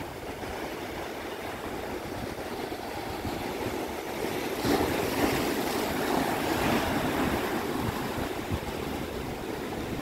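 Sea surf washing in and breaking over rocks in the shallows, a steady rush that swells a little about five seconds in.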